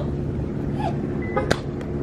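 Steady hum of a running vehicle engine, with one sharp click about one and a half seconds in.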